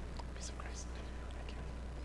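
Faint, quiet voices of people exchanging the sign of peace, a few soft hissing syllables, over a steady low hum.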